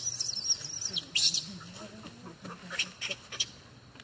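A small bird's high, wavering trill in the first second. Crisp rustles of dry leaf litter come from monkeys shifting and handling an infant, one about a second in and a few more near the three-second mark.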